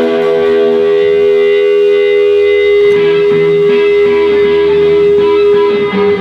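Electric guitars played live through amplifiers: one long sustained note rings throughout, with a plucked guitar line joining about three seconds in.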